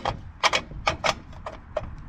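Light, irregular metal clicks of a steel bolt and its hardware knocking against a galvanized steel trailer winch seat bracket as the bolt is worked through by hand, a few clicks each second.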